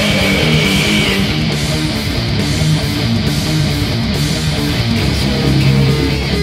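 Sludge metal band music: distorted electric guitars and bass guitar playing a heavy, loud passage without vocals. A high held note ends about a second in.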